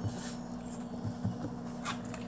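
Tarot cards being handled and slid against each other and the table cloth: soft rubbing and scraping, with a brief crisp card snap near the end.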